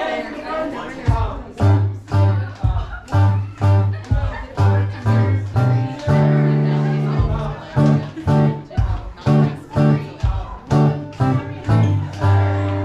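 Live acoustic guitar playing an Irish dance tune, strummed on a steady beat of about two strokes a second over changing bass notes.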